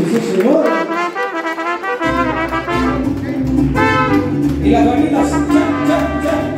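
Live mariachi band playing an instrumental passage: trumpets carry the melody over guitars, and the deep guitarrón bass comes in about two seconds in.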